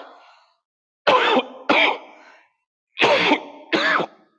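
A man coughing into his fist: four short, hard coughs in two pairs.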